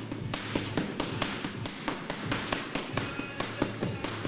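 Boxing gloves smacking into a trainer's focus mitts in quick punch combinations, a run of sharp slaps at about four or five a second.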